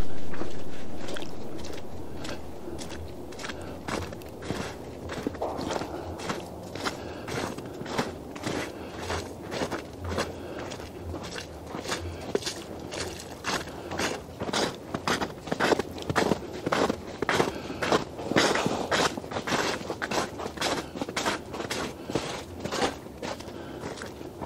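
Footsteps of two people walking along a trodden path through snow, at about two steps a second. A loud rush of noise fades away over the first couple of seconds.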